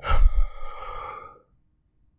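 A person's acted gasp and sob: a sharp breathy cry that trails off and fades out after about a second and a half.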